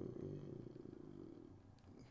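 A man's low, creaky drawn-out hum, like a hesitant "ähm" trailing off, fading out after about a second and a half.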